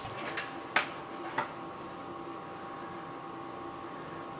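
A few light clicks and knocks, the loudest just under a second in, as a Dremel rotary tool fitted with a plunge router attachment is picked up and handled, its motor not yet switched on. A faint steady hum runs underneath.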